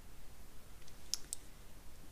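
Metal knitting needle tips clicking against each other as stitches are worked: two sharp clicks a fifth of a second apart about a second in, with a fainter tick just before them, over quiet room tone.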